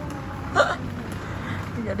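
A short, sharp vocal sound from a person about half a second in, over the steady hum and murmur of a supermarket; speech begins near the end.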